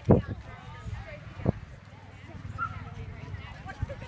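Horse cantering around a show-jumping course, its hoofbeats on the arena footing heard under spectators' low talk. There are three louder low thumps: the loudest right at the start, one about a second and a half in, and one near the end.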